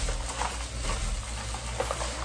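Rustling of plastic bags and packaging as purchased items are handled: a steady hiss with a few faint clicks.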